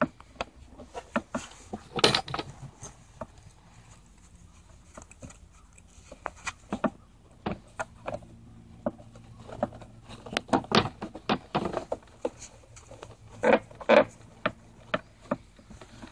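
Handling noise from gloved hands pressing and clamping a heat-softened PVC pipe on a wooden table: irregular clicks, taps and scrapes, a few louder knocks among them.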